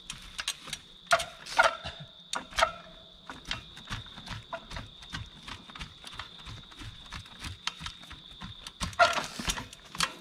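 Trials bike hopping and balancing up onto a granite boulder: an irregular run of sharp knocks and clicks from tyres and wheels striking rock and the bike's chain and parts rattling, with the loudest knocks about a second in and near the end.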